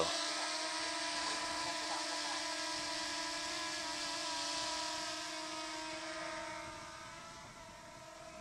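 DJI Mini 2 quadcopter's propellers whining steadily as it hovers just after a hand launch, fading over the last couple of seconds as it flies away.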